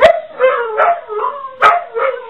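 Two dogs howling and barking together, a quick run of short, pitched howl-barks about every half second, with two sharper barks near the start and about three-quarters of the way through.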